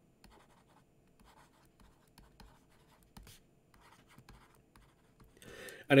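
Stylus writing on a tablet surface: a faint, irregular run of short scratchy pen strokes as a few words are handwritten.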